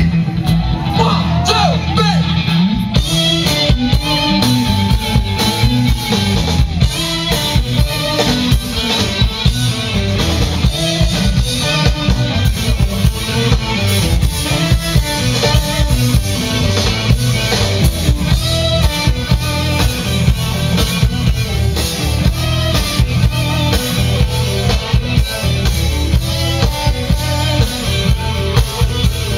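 Live funk band playing: electric guitars, bass and drum kit over a steady beat, with a long held note a few seconds in.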